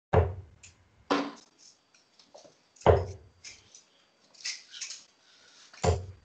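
Darts striking a bristle dartboard: four sharp thuds spaced one to three seconds apart, picked up over a video call.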